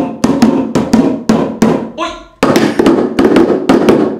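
Homemade drums with packing-tape heads struck with empty plastic PET bottles in a quick, even rhythm of several hits a second, several players together. The playing stops for a moment about two seconds in, then starts again.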